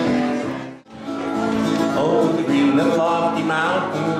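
Live country music played on acoustic string instruments. The sound cuts out briefly about a second in, then the music picks up again.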